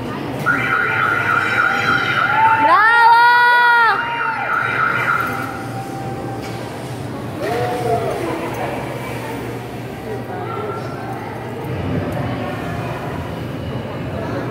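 Indoor amusement-centre din: a steady high tone lasting about five seconds, with a loud wail that rises, holds and falls about three seconds in, and a shorter similar call near eight seconds.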